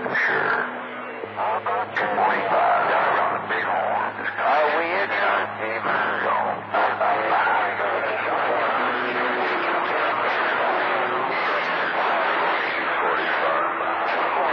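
Garbled voices received over CB radio on channel 28 skip, thin and cut off in the highs, buried in constant static. Steady low hum tones run underneath.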